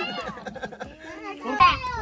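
Children's voices chattering and calling out over one another, with a louder voice near the end.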